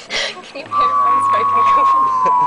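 A single long, steady high-pitched tone that begins a little after the start, holds one note and sags slightly in pitch, continuing past the end.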